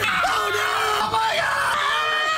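A woman screaming in fright, long held high-pitched screams as a costumed scare actor grabs her.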